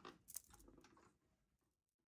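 Near silence: a couple of faint clicks and soft rustles from handling, dying away to silence about a second in.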